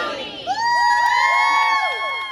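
A group of people cheering: the end of a shouted chant, then from about half a second in a chorus of whoops that rise and are held together.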